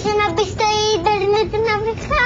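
Children singing, holding notes that step up and down in pitch every half second or so.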